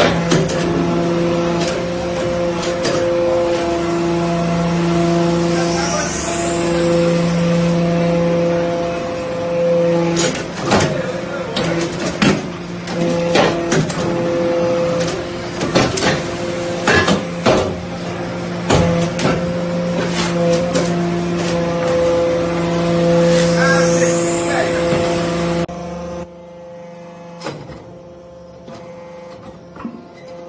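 Hydraulic metal-chip briquetting press at work: a steady hum from its hydraulic power unit swells and eases with each pressing cycle, under repeated sharp metallic knocks and clanks from the ram and the briquettes. Twice a rising hiss comes through. Near the end the hum cuts off, and quieter scattered knocks follow.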